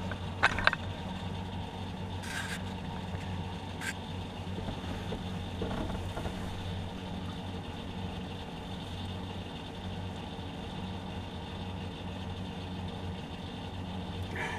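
A steady low engine hum running evenly, with a few light clicks and taps in the first four seconds.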